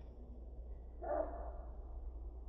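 A dog makes a short, high vocal sound about a second in, over a faint low rumble.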